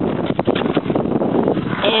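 Walking noise from a person carrying a handheld camera: irregular footsteps and rustling handling noise, a dense crackle, with a woman's voice starting near the end.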